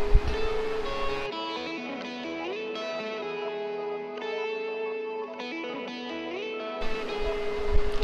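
Background music: a guitar holding long, sustained notes that step from pitch to pitch.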